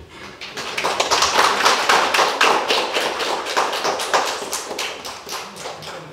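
Audience applauding: dense hand clapping that builds over the first second and gradually dies away toward the end.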